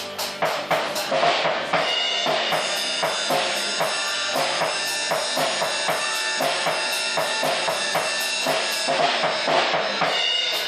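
Acoustic drum kit played along to a rock song: heavy bass drum, snare and crash hits in the first two seconds, then a steady, evenly spaced cymbal pattern with the kick and snare. The recorded song plays underneath the drums.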